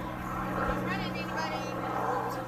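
People talking nearby, with a steady low drone underneath.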